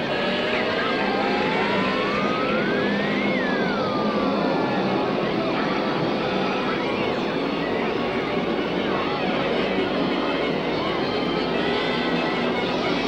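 A dense jumble of many stop-motion cartoon soundtracks playing at once: overlapping voices, music and sound effects blend into a steady din. In the first few seconds one whistle-like tone glides upward for about three seconds, then drops back down.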